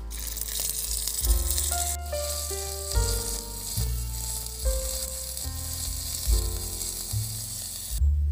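Onion paste frying in hot oil in a miniature wok, a steady sizzle, heard over background piano music.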